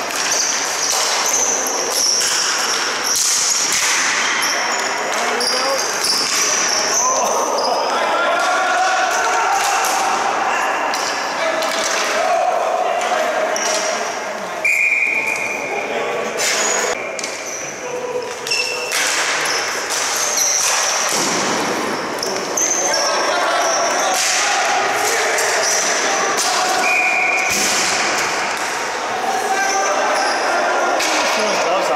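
Live ball hockey play in a large indoor arena: repeated sharp clacks of sticks, ball, floor and boards, mixed with players' indistinct shouts, all echoing in the hall.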